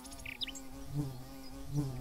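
An insect buzzing steadily close by, its pitch wavering a little, with two brief bird chirps about half a second in.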